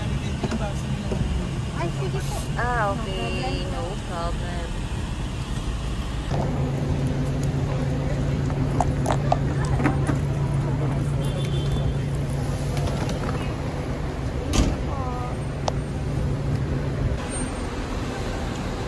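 Van cabin road noise with a few voices, then from about six seconds in the steady low hum of the van's engine idling at the kerb while people talk and unload bags. One sharp knock sounds about fifteen seconds in.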